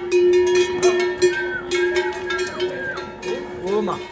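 A cowbell on a walking cow clanking repeatedly at an uneven pace, each strike ringing on between hits.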